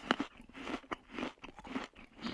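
Someone chewing and biting food close to the microphone: a quick, irregular string of small crunches.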